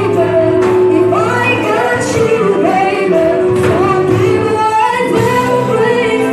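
Live band with a female lead singer performing a slow R&B ballad: a sung melody with held, wavering notes over sustained keyboard and bass.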